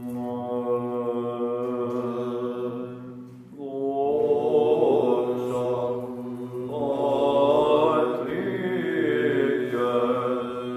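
Byzantine chant in the plagal fourth mode: male voices hold a low, steady drone (the ison) under a solo chanter. The opening is a held note, and about three and a half seconds in the melody begins to move up and down over the unchanging drone.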